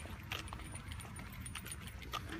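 Faint metallic jingling and light ticks from a small dog's leash and collar as it trots along a concrete sidewalk, over a low rumble.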